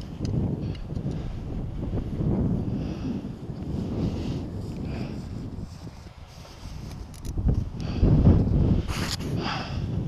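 Wind buffeting the microphone in uneven gusts, loudest about eight seconds in, with a few short clicks near the end.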